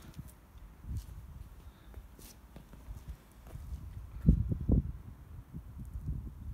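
Footsteps on paving slabs, with two heavier low thumps close together a little past four seconds in.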